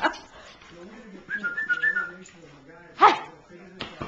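A dog whining softly in wavering tones, then one short, louder bark about three seconds in, followed by a brief click.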